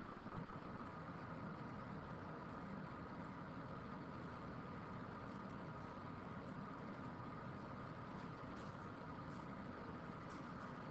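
Steady low background hum and hiss of room tone, with a few faint clicks near the end.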